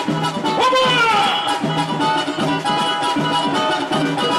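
Live samba band playing a samba-enredo: cavaquinho with a surdo drum and hand percussion in a steady, even rhythm. About a second in, a voice slides down in pitch.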